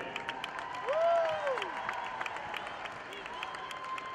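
Scattered applause from a small arena crowd, separate claps audible, with one drawn-out call rising and then falling in pitch about a second in.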